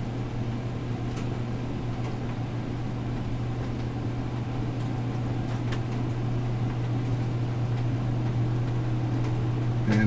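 Human centrifuge running under a slowly building G load: a steady low hum that grows slightly louder as the run goes on, with a couple of faint clicks.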